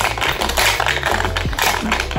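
Metal cocktail shaker being shaken hard, its contents rattling in a rapid, continuous clatter, over background music with a steady bass line.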